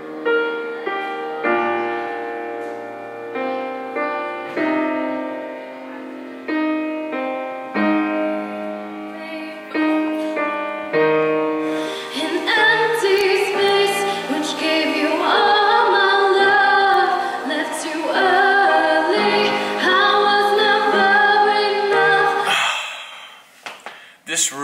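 Grand piano played solo, struck notes and chords ringing and dying away. About halfway through, a woman starts singing over the piano accompaniment, holding notes with vibrato; the music stops shortly before the end.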